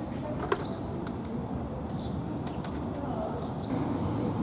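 Outdoor small-town street ambience: a low background murmur with faint voices and a few short bird chirps, with one sharp click about half a second in.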